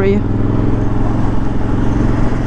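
Suzuki V-Strom motorcycle engine running at a steady pace while riding, a constant even hum.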